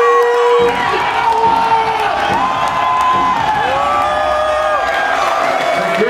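Concert crowd cheering and shouting long held calls, over music from the stage sound system whose low end comes in abruptly about half a second in.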